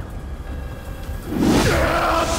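A low, steady drone from the soundtrack, then about a second and a half in a sudden loud rushing whoosh: the sound effect of a magical force blast throwing a man backwards.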